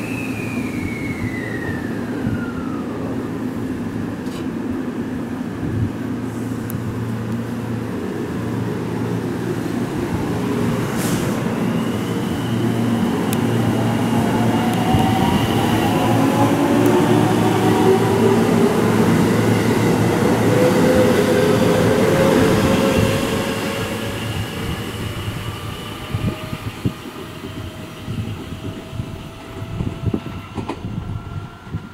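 JR West 223 series 2000-番台 electric train pulling away from the platform. Its motor whine climbs steadily in pitch as it accelerates past, loudest midway, then fades as it leaves.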